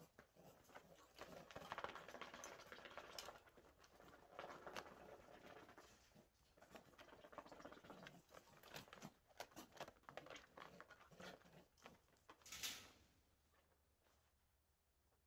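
Quiet handling noise: irregular rustling of clothing and scuffing on a dirt floor as a person holds a squirming hare, with a louder brief rustle near the end as she gets up.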